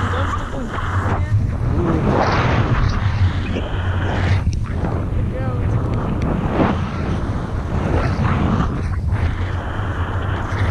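Steady wind rush and low buffeting on a handheld action camera's microphone, from the airflow of a tandem paraglider in flight.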